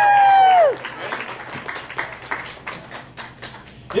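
A long held shout that trails off under a second in, then scattered clapping from a small audience for about three seconds, and a short "woo!" at the very end.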